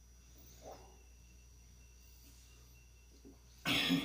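A person drinking from a glass: a faint swallow about two thirds of a second in, then a short, loud, breathy exhale as the drink is finished near the end.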